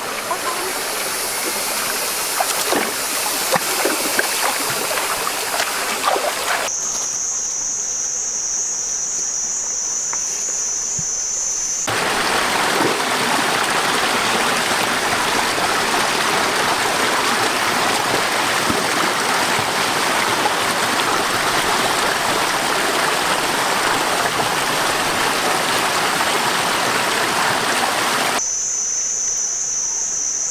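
Shallow stream water rushing over rocks, with small splashes in the first few seconds, and a louder, fuller rush of a small cascade through the middle. From about 7 to 12 seconds, and again near the end, the water is quieter and an insect's steady high buzz runs over it.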